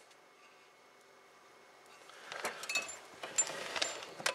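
Near silence for about two seconds, then light clicks and scrapes as a soldering iron and fingers work at the wiring terminals on a power supply's metal chassis.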